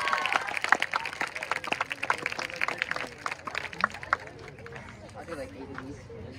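Scattered applause from a small crowd, dying away over about four seconds, with faint voices talking underneath.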